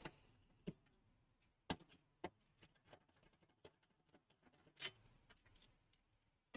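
A few faint, irregular clicks and ticks from a screwdriver backing out the screw that holds a desktop computer's side panel, the loudest about five seconds in.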